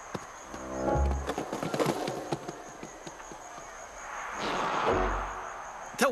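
Cartoon sound effects over music. About a second in, a quick falling tone ends in a low thud; near five seconds, a swelling whoosh ends in another low thud.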